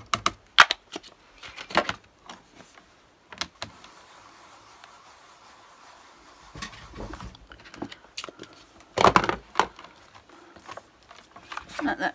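Hard plastic clicks and taps of a stamp ink pad being opened and handled, then tapped and stamped in a stamping platform, with a cluster of heavier knocks about nine seconds in.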